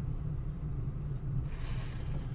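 Car cabin noise while driving slowly: a steady low engine and road hum, with a brief hiss rising near the end.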